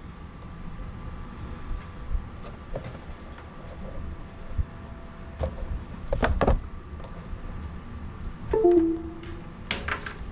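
Handling noise from a small cinewhoop drone on a workbench: light plastic clicks and knocks as its battery connector is pulled and unplugged, loudest about six seconds in.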